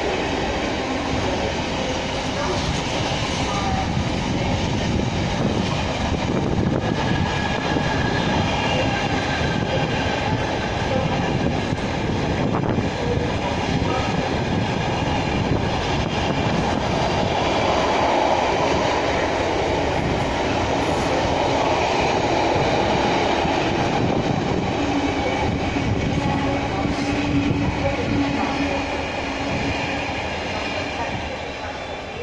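Wagons of a Freightliner intermodal container train rolling steadily past on the rails, the wheels on the track making a continuous rumble that eases a little near the end.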